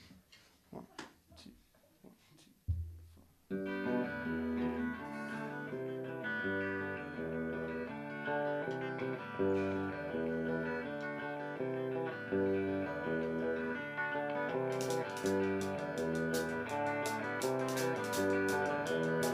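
After a few seconds of quiet with small knocks, a guitar starts the intro of a slow song, its notes changing in a steady pattern. Near the end the drums join with evenly spaced cymbal strokes.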